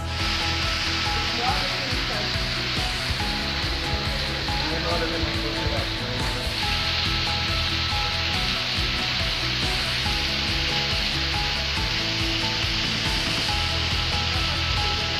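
Small waterfall pouring over sandstone rock: a steady rush and splash of falling water, with soft background music under it.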